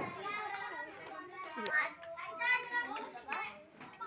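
Children's voices chattering and talking over each other, with one short click about one and a half seconds in.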